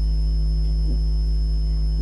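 Steady electrical mains hum, low and buzzy, with a thin steady high-pitched tone above it.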